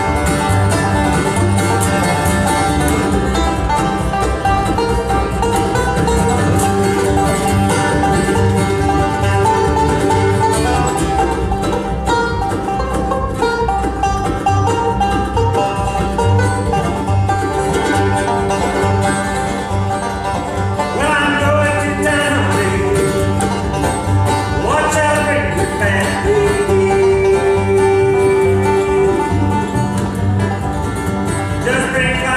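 Acoustic bluegrass band playing live with a steady beat: banjo, acoustic guitar, mandolin and upright bass.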